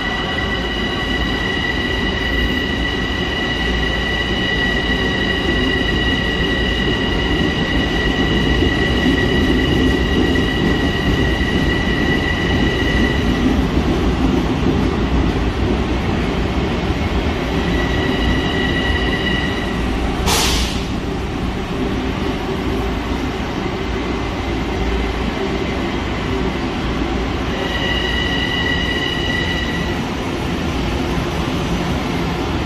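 Long Island Rail Road electric train pulling into an underground station platform: a steady low rumble with a high, steady whine that drops out partway and returns briefly twice. About two thirds of the way through comes one short, sharp burst of noise.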